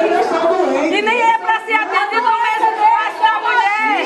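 Speech only: a woman talking continuously, with background chatter.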